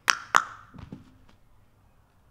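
Two sharp percussive hits about a quarter of a second apart, followed by a faint low thud.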